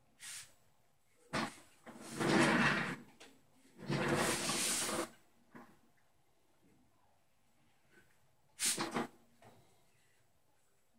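Handling noise from paint-pouring gear on a plastic-covered table: several separate bursts of rustling and clatter. Two longer, louder ones come in the first half, and a short one comes near the end.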